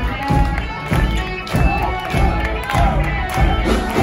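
Live rock band playing loud, a steady drum beat under electric guitar with sliding notes, while the crowd cheers close by.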